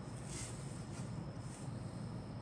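Steady low background hum with a faint steady high whine, and a brief soft rustle about half a second in as the plastic model-kit part on its sprue is handled.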